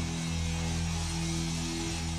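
Electric guitars and bass sustaining a low chord through the amplifiers, held steady and humming, over the noise of an arena crowd.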